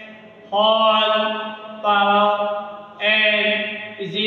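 A man's voice in long, drawn-out syllables held on a nearly steady pitch, three of them, in a chant-like monotone.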